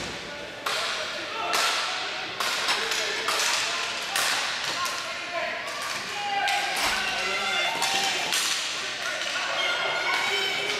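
Ball hockey play: a string of sharp clacks and knocks from sticks and the ball striking the floor and boards, echoing in a large arena, with players' shouts in between.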